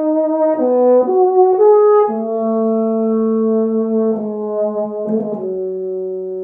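Solo euphonium playing a slow, unaccompanied melody: a few short notes in the first two seconds, then longer held low notes, the last one sustained.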